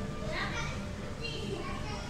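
Indistinct chatter of children's voices in the background, in the manner of children playing, over a low steady hum.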